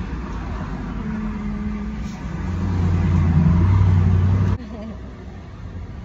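Car cabin noise while driving: a low road and engine rumble that swells over a couple of seconds, then cuts off suddenly about four and a half seconds in.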